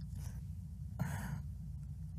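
A person's short breath out, like a soft sigh, about a second in, over a low steady hum.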